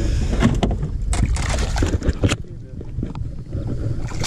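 Water splashing as a hooked largemouth bass thrashes at the surface beside a boat while being landed by hand, a few bursts of splashing in the first two seconds or so. Wind rumbles on the microphone throughout.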